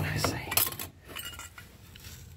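Loose metal truck parts clinking and rattling against each other as a hand rummages through them in a cardboard box. There are a few short clinks in the first second and a half, then quieter handling.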